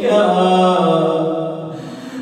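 A man's solo chanted Arabic supplication: one long held vocal note that slowly sinks in pitch and fades away near the end.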